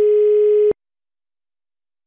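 Telephone ringing tone heard on the caller's line: a steady tone of about 440 Hz, one ring of the cycle ending less than a second in. The call is ringing and has not yet been answered.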